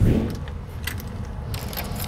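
Keys jangling with a few light metallic clicks as a door lock is worked.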